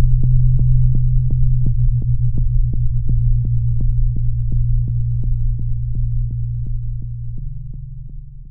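Electronic soundtrack: a low, steady synthesizer drone with sharp, evenly spaced clicks about three a second. The drone steps slightly higher near the end as the whole sound fades out.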